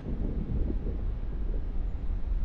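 Low, steady rumbling drone from a music video's cinematic soundtrack, its weight in the deep bass, swelling up at the start.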